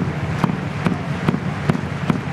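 Rugby stadium crowd ambience, a steady low background, with a sharp knock repeating evenly about two and a half times a second.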